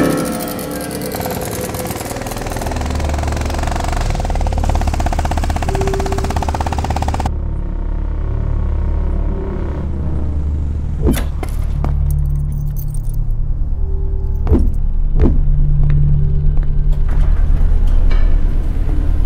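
Dark film underscore. A dense, busy passage stops abruptly about seven seconds in and gives way to a steady low rumbling drone, with short tones and a few sharp hits over it.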